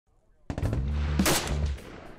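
Gunfire from AK-pattern rifles, sharp cracks starting about half a second in, layered with an intro music hit that holds a heavy low chord for about a second, then fades near the end.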